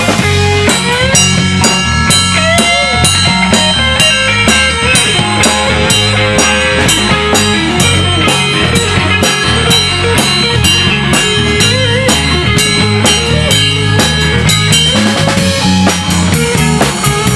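Live rock band playing an instrumental section: a lead electric guitar with bent notes over a drum kit and electric bass keeping a steady beat.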